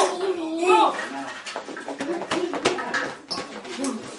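A child's voice singing for about the first second, then wordless vocalising and babble over a run of short clicks and knocks.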